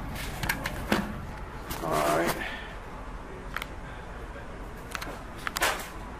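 A brief, indistinct voice about two seconds in, among scattered light knocks and clicks.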